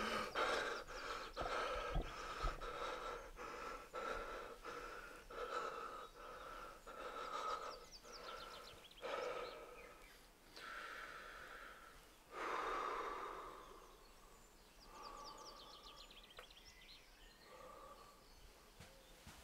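A man breathing hard after a fright: quick, shaky breaths that grow slower and further apart, with a long, heavier exhale a little past the middle.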